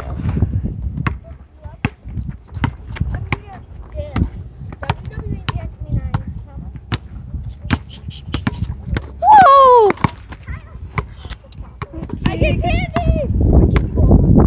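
Basketball dribbled on an asphalt court: a string of sharp bounces. A little past halfway a child gives a loud falling shout, and near the end a shorter cry.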